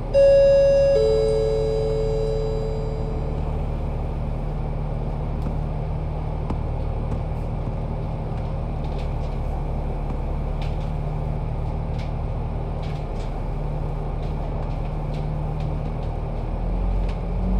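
An electronic two-tone ding-dong chime inside a double-decker bus: a higher note, then a lower one about a second later, both fading over a couple of seconds. Under it, the steady running of the MAN A95 bus's diesel engine and road noise, with a few light rattles later on.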